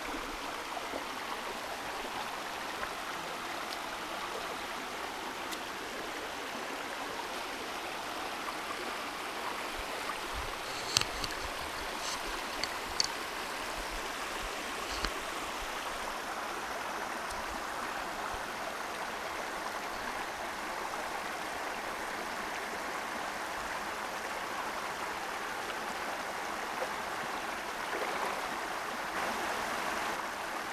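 Shallow creek water running steadily over a small rocky cascade. A few sharp clicks come about a third of the way through.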